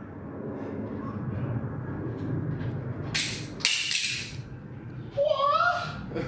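A kick to knock the lens cap off a camera: two short loud rushes of noise, about half a second apart, a little past halfway, over a low steady room noise. A man's voice calls out near the end.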